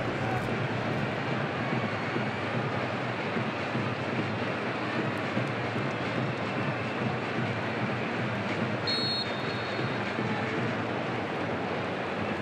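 A large stadium crowd making a steady roar of noise after a goal. A brief high-pitched whistle sounds about nine seconds in.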